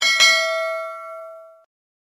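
Notification-bell ding sound effect of a subscribe-button animation: a click, then a bright bell chime that fades over about a second and a half and cuts off.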